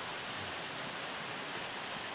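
Steady rush of water from a small waterfall and stream, an even hiss with no change in level.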